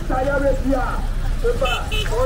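Several people talking among themselves in a busy open-air market, over a steady low rumble. A rapid run of high-pitched pulses starts near the end.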